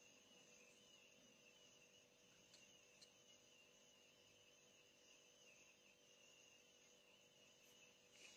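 Near silence: faint room tone with a steady high-pitched whine and a couple of tiny ticks.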